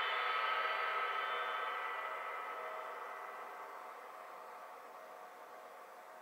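A meditation bell ringing out, its ring of several steady overlapping tones fading slowly away, closing the meditation session.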